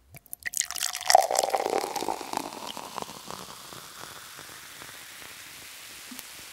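Liquid poured from a bottle, a wine-pouring sound effect: splashing and gurgling with a wavering tone for the first two or three seconds, then settling into a softer, steady hiss.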